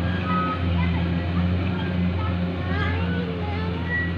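Combine rice harvester's engine running, a steady low drone, with faint wavering higher sounds over it, mostly in the second half.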